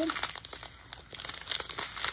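Clear plastic packets of diamond-painting drills crinkling as they are handled, with a stream of irregular small crackles.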